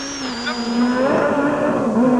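Rally car engine heard from inside the cockpit, running hard at fairly steady revs on a gravel stage, with a thin high whine over it; the pitch dips briefly about a third of a second in.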